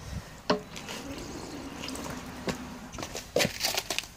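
Water running out of the opened drain valve at the bottom of an air compressor tank and splattering onto concrete in irregular drips and splashes, loudest near the end. This is condensed moisture being purged from the tank, and the water is a little oily.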